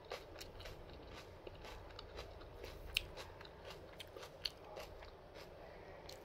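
Close-up eating of red-fleshed dragon fruit: biting and chewing the soft fruit, making a quick, irregular series of small wet mouth clicks, with a sharper one about three seconds in.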